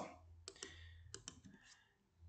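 A few faint, scattered clicks from a computer's mouse and keys in an otherwise near-silent room.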